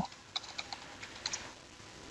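Computer keyboard typing: a quick run of faint key clicks in the first second, then two or three more a little past the middle.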